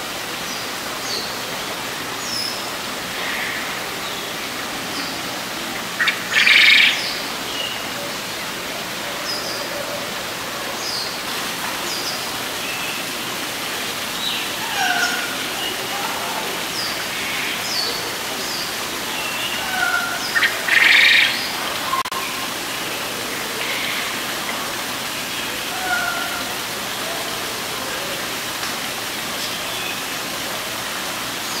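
Small birds chirping and calling, with many short, scattered notes over a steady background hiss. Two much louder bursts stand out, one about six seconds in and one about twenty seconds in.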